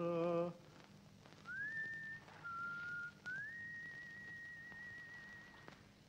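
A sung male note with vibrato ends about half a second in. Then a lone whistled melody follows: a rising note, a lower note, and a long high note held with slight vibrato that cuts off near the end.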